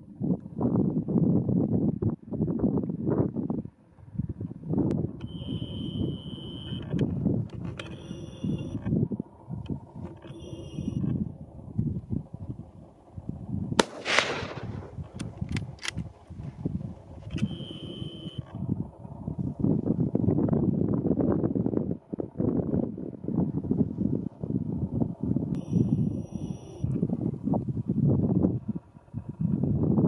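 A single rifle shot about halfway through, cracking out over gusting wind noise on the microphone.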